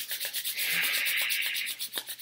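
A pair of palms rubbed briskly together in rapid back-and-forth strokes, giving a dry, hissing friction sound.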